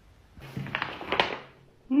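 A sheet of paper handled on a wooden desk: a soft rustle lasting about a second, with a couple of sharper scrapes in it.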